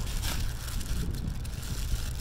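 Wind buffeting the microphone, a steady low rumble, with the light crinkle of a plastic bag of small hardware being handled.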